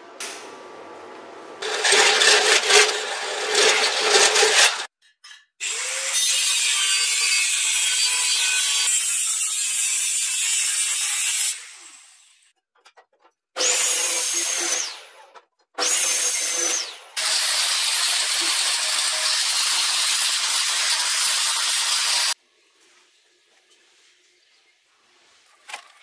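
Metalworking tool sounds in a series of cuts: about three seconds of crackling electric arc welding on a steel frame, then a power tool working steel in several long runs, the motor whine falling away twice as the tool stops.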